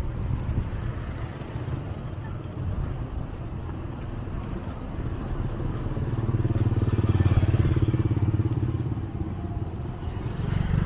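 Street traffic: engines of passing vehicles running. A louder, steady engine hum builds about six seconds in and fades near the end, as a motorcycle or tricycle passes close by.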